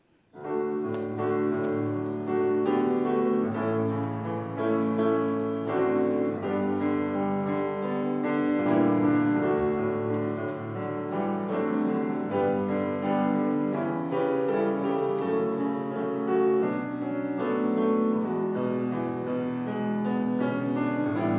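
Grand piano playing a hymn chorus through once as a solo, starting about half a second in.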